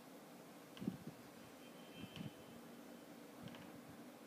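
Faint room tone with a few brief soft knocks, the loudest about a second in, from a hand holding a smartphone.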